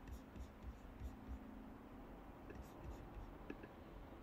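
Near silence: a faint low hum with a few scattered faint ticks.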